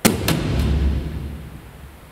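News-bulletin transition sting: a sudden hit with a deep boom that fades away over about a second and a half.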